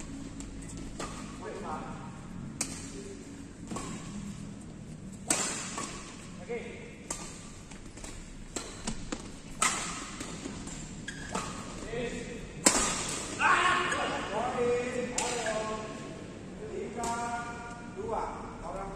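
Badminton rackets striking a shuttlecock during a rally, sharp hits a few seconds apart that echo in a large hall. Voices call out over the last few seconds.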